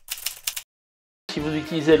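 Typewriter keystroke sound effect: a quick run of sharp key clicks, about five or six a second, that stops about half a second in. It is followed by a short moment of total silence, then speech.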